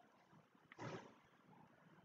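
Near silence: room tone, broken once, about a second in, by a short, soft rush of noise.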